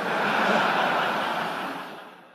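Audience applauding in a large hall, starting suddenly and dying away over about two seconds.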